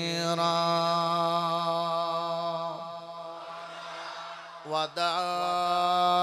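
A man chanting a melodic religious recitation solo into a microphone, in long, steady held notes: one drawn-out note fades away over the first four seconds, there is a short breath just before five seconds, and a new held note begins.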